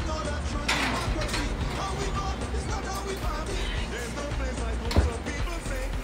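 Background music playing, with a sharp knock about five seconds in.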